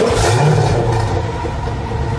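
Car engine revving, its low note rising near the start, then holding and easing back, with a rough rasp over it.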